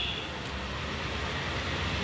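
Steady low rumble of outdoor city background noise, like traffic running past, with a brief high tone right at the start.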